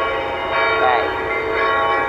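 Church bells ringing from the cathedral's bell towers: several overlapping bell tones ring on and blend, with new strokes coming in as earlier ones die away.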